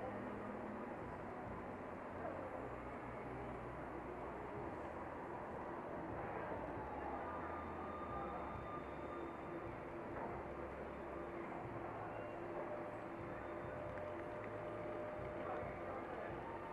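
Street traffic noise as a Croydon Tramlink tram approaches slowly and draws alongside. A steady faint hum comes in about halfway through as the tram nears.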